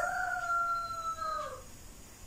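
A person inhaling through a curled tongue in sitali breathing: the air drawn in makes a steady whistle-like tone that falls slightly and fades out after about a second and a half.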